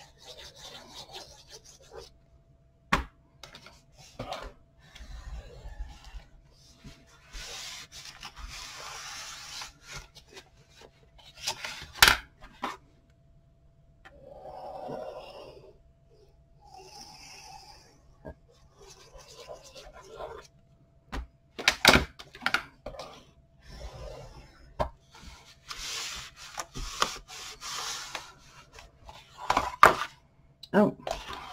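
Paper being rubbed and pressed down along the edges of a cardstock-covered chipboard album cover with a handheld tool, in scratchy strokes that come and go. There are a few sharp knocks.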